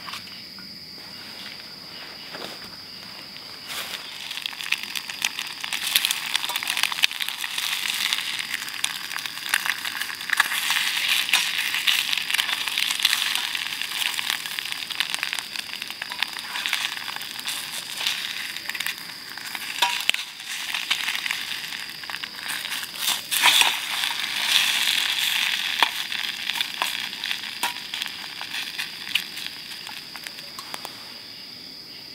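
Two eggs frying in a small skillet on a canister gas stove: the sizzle builds up about four seconds in and crackles on steadily. Now and then a metal fork clicks and scrapes against the pan.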